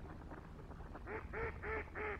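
A duck quacking in a rapid series, about three loud quacks a second starting about a second in. Fainter scattered calls of distant waterfowl lie underneath.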